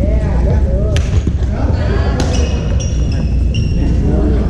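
A badminton racket striking a shuttlecock with one sharp crack about a second in, followed by several short squeaks of sneakers on the hardwood gym floor, with players' voices underneath.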